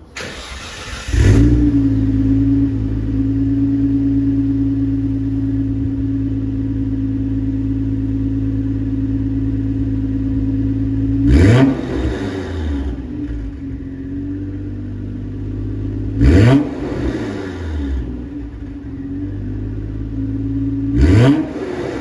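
A 1993 Nissan Skyline GT-R's RB26DETT twin-turbo straight-six, breathing through a Fujitsubo front pipe, SARD catalyser and SACLAM silencer. It is cranked on the starter and catches about a second in, then idles steadily. Near the middle, about five seconds later and again near the end, it is revved briefly, each rev rising and falling quickly.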